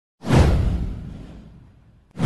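A whoosh sound effect with a deep boom under it, hitting suddenly just after the start and fading away over about a second and a half.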